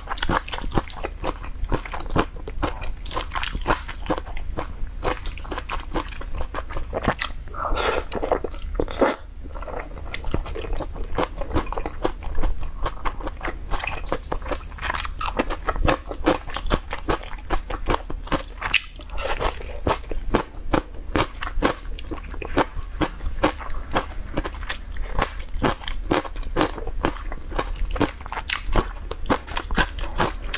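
Close-miked chewing of mianpi (wide cold wheat noodles) mixed with cucumber and carrot strips: a dense, continuous run of quick wet mouth clicks and smacks.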